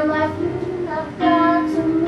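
A woman singing solo, holding a run of sustained notes, with a low instrumental accompaniment underneath.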